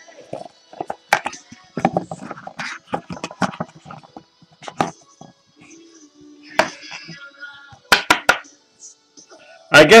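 Scattered taps, clicks and crinkles of trading cards and their packaging being handled, over faint background music.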